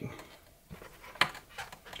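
Plastic packaging handled by hand: faint rustling and small clicks as a bagged toy figure is worked loose from its tray and twist ties, with one sharp click a little past a second in.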